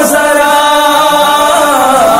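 A man singing an Urdu naat (devotional song in praise of the Prophet), drawing out one long, slightly wavering note.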